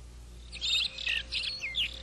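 Birds chirping: a quick run of short, high chirps starting about half a second in, with a few quick falling notes near the end.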